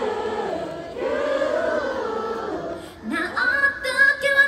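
Live outdoor concert heard from inside the crowd: many voices singing a melody together, the audience singing along with the performer. Just after three seconds in, a single voice slides up into a held high note.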